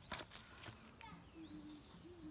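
Faint outdoor ambience: a few short, falling bird chirps over a steady high-pitched insect hum, with two sharp clicks just after the start.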